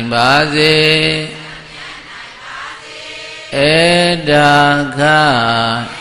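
A Buddhist monk chanting verse into a microphone in a single male voice: two long, drawn-out melodic phrases, one at the start and one in the second half, with a short pause between.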